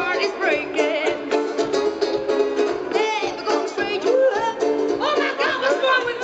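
Live band playing a fast rag, with plucked banjo and contrabass balalaika over drums keeping a quick, even beat and a melody line that bends up and down above them.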